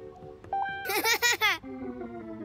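A cartoon character's short, high giggle in quick bursts, over light background music with sustained notes.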